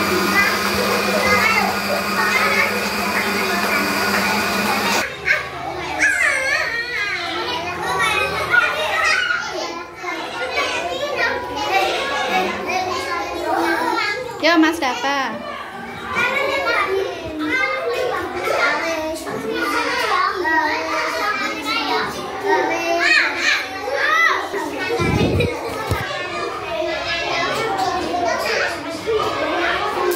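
Electric countertop blender running steadily as it blends watermelon into juice, cutting off suddenly about five seconds in. Young children talk and shout for the rest of the time.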